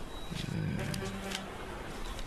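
Banknotes being counted by hand, a few crisp paper snaps as the notes are flicked, over a low, wavering hum in the first half.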